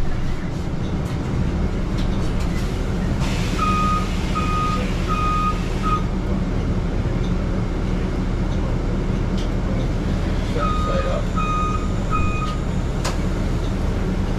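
Steady low running hum of a city transit bus standing at a stop, with two runs of electronic warning beeps at one pitch: four evenly spaced beeps a few seconds in, then three more about ten seconds in.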